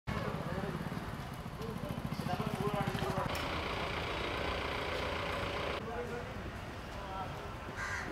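A vehicle engine idling with a low, rapid throb for the first three seconds, under indistinct chatter of people talking; a hiss-like noise takes over for a couple of seconds after that.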